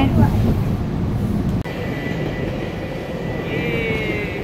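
Low rumble of a moving vehicle, then after a sudden cut a train passing with a steady high whine whose pitch falls slightly near the end as it goes by.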